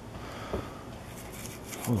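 Low, steady background noise with a faint hum, broken by a short vocal sound about half a second in and a man's exclamation starting near the end.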